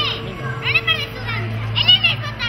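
Young children's high-pitched voices calling out: three short exclamations about a second apart, the last the loudest.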